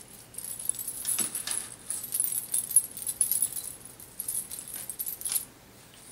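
The metal coins and sequins of a belly dance coin scarf jingling and clinking as its ends are handled and tied, in irregular flurries that stop shortly before the end.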